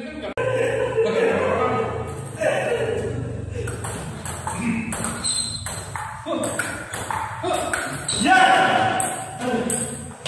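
Table tennis rally: the ball pinging off the paddles and the table in a quick back-and-forth series of sharp clicks.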